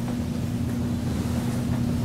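Steady low hum and rumble of conference-room background noise, with one constant low tone running through it.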